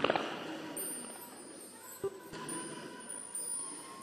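A pause in a preacher's amplified speech. The echo of his last words dies away in the first moment, leaving faint hall ambience with a thin steady tone and a soft click about two seconds in.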